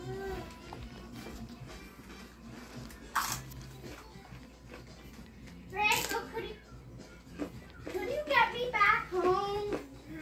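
Short runs of high-pitched whining vocal calls that rise and fall in pitch, about six seconds in and again from about eight seconds nearly to the end. A single sharp crack comes about three seconds in, between the calls.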